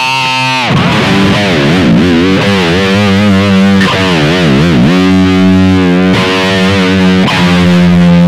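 Electric guitar played through distortion: a held note wavers, dipping in pitch and coming back about once a second, then long sustained notes ring out.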